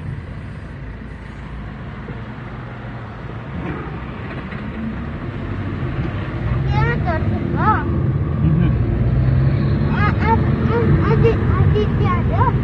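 Car engine and road noise heard inside the cabin, growing louder over the first half as the car pulls away and gathers speed. Short bursts of voices come twice in the second half.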